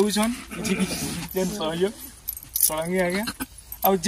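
A person's voice speaking in short, broken phrases with pauses between them, over a light metallic jingling.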